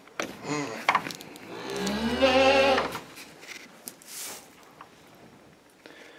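Charolais cow mooing: one long, low moo starting a little under two seconds in and lasting just over a second.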